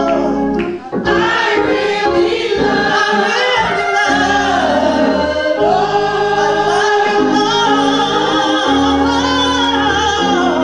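Church choir singing a gospel song through microphones, with steady low accompanying notes held beneath the voices.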